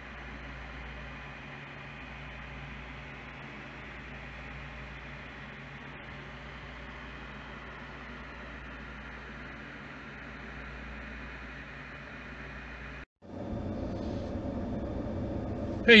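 Steady background hiss with a low hum that cuts out for a moment about 13 seconds in. It returns as a louder steady noise inside a car's cabin, and a man's voice starts right at the end.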